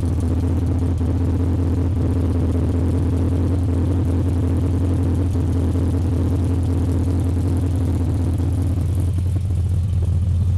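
Chevrolet 350 small-block V8 idling steadily through dual straight-pipe exhaust, a loud, even low rumble with no revving.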